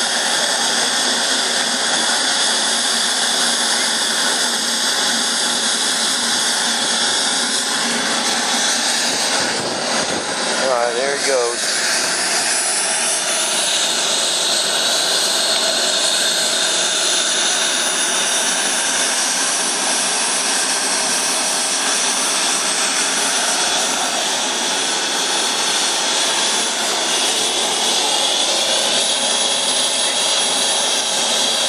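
Small turbine engine of an RC model F-16 jet running steadily on the ground, a loud even rush with a thin high whine.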